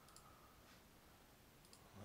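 Near silence with two faint computer mouse clicks, one just after the start and one near the end.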